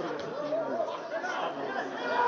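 Indistinct shouting and chatter from several voices around a football pitch, from players and a sparse crowd.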